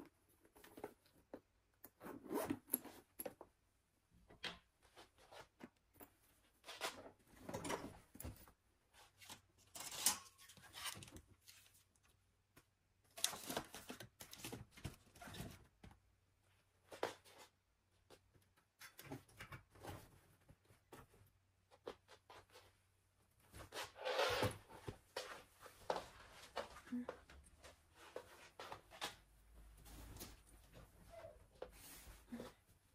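Belongings being handled on wire closet shelves: a handbag's zipper pulled, with rustling, rubbing and light knocks as things are picked up and set down, in short bursts with pauses between.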